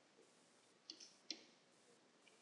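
Faint clicks of a stylus tip tapping a tablet screen while handwriting, three short clicks about a second in, otherwise near silence.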